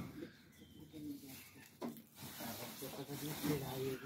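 Faint background talk, with a single sharp click a little before two seconds in.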